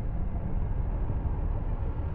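Deep, steady low rumble of a cinematic sound effect for stone shattering and debris flying.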